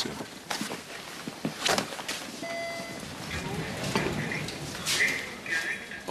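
Hospital ward background sound: indistinct voices and a few footsteps and knocks, with a short steady electronic beep about two and a half seconds in.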